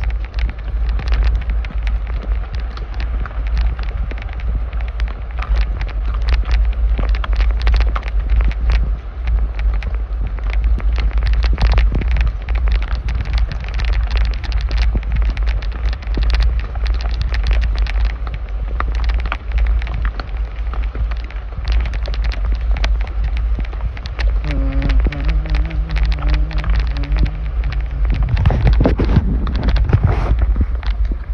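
A horse walking on a dirt and rock trail, its hooves knocking in an irregular stream, under a steady low rumble of wind on the microphone. Near the end a low steady tone sounds for a few seconds.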